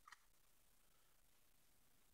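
Near silence: room tone, with one faint click right at the start.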